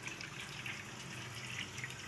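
Faint, steady hiss of water running from an open hot-water tap while the gas boiler stays silent and does not fire.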